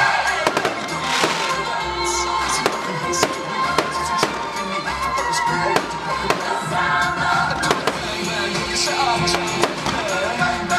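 Fireworks going off, with repeated sharp bangs and crackles, heard together with background music.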